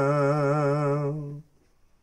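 A man's voice chanting a Sikh devotional hymn, unaccompanied. He holds one long note with a slight wobble in pitch, which stops about three-quarters of a second before the end, leaving near silence.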